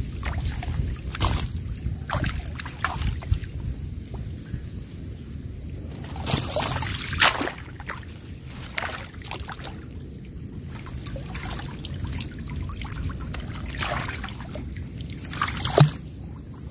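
Water splashing, sloshing and trickling as a chicken-wire fish trap is moved and lifted in shallow water, in irregular splashes, the biggest about six to seven seconds in and again near the end.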